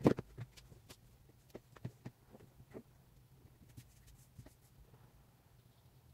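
Thin linen fabric being handled and folded on a tabletop: light rustles and soft taps, scattered and irregular, loudest right at the start.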